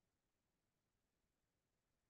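Near silence: a faint, steady noise floor with no distinct sound.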